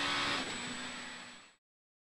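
Inside the cabin of a 2.0-litre Mk2 Ford Escort rally car at speed: engine and road noise with a steady engine tone. It fades out over about a second, from half a second in, to silence.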